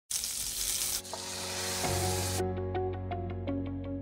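Food sizzling on the hot plates of an electric waffle maker, in two short takes with a cut about a second in. The sizzle stops suddenly about two and a half seconds in, and light keyboard music with a repeated melody carries on.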